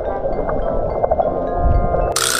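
Background music with light chime-like bell notes, over the muffled low rush of an underwater action camera.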